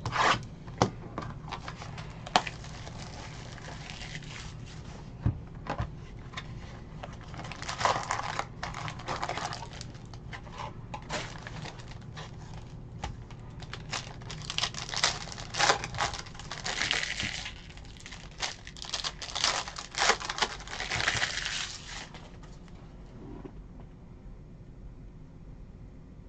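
A sealed cardboard box of trading cards is torn open and its foil card packs are ripped and crinkled open. The sound comes as a run of sharp snaps and bursts of tearing and crackling that die away shortly before the end.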